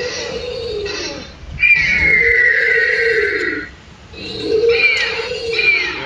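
Recorded dinosaur roars played from a life-size model dinosaur's loudspeaker: three long, loud growling calls, the longest in the middle lasting about two seconds.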